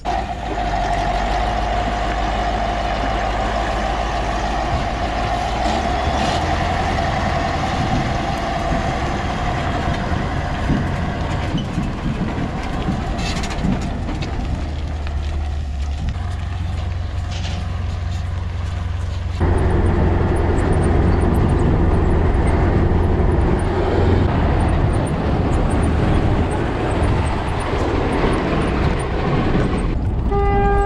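Heavy truck engines running and driving on a muddy dirt road, with a steady whine over the engine noise through the first third. About two-thirds in, the sound changes abruptly to a louder, deeper engine drone.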